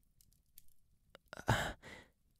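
A man's breathy sigh about a second and a half in, after a few faint mouth clicks.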